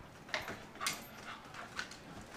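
Two dogs playing together, with short dog vocal sounds and scuffles; three sharper sounds stand out, the last near the end.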